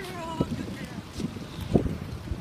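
Wind rumbling on the microphone of a handheld camera, with three dull low thuds of footsteps and handling as the person filming moves across sand. A short pitched, voice-like sound comes at the very start.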